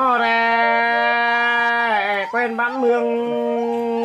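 A solo voice singing Khặp Thái, the Tai (Thái) folk song style, drawing out one long held note for nearly two seconds, then after a brief wavering turn holding another long note.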